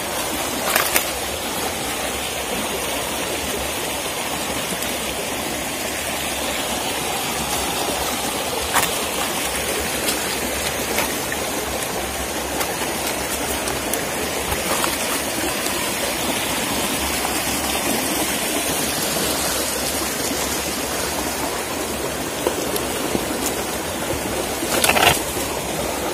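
Shallow stream water running and trickling over rocks, a steady rushing sound with a few brief clicks.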